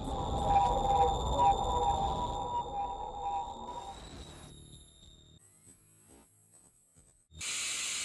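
Logo sting sound design: a deep rumble under sustained high ringing tones that fades away over about five seconds, then a short burst of static hiss near the end.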